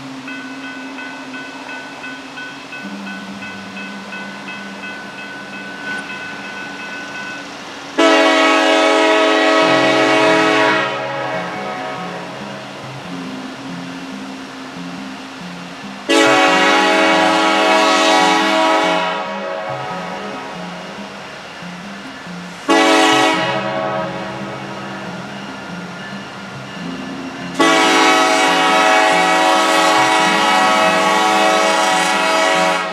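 Nathan K5LLA five-chime air horn on a Norfolk Southern diesel locomotive sounding the grade-crossing signal: two long blasts, a short one, then a long one, with the locomotives' diesel engines running underneath as the train pulls away.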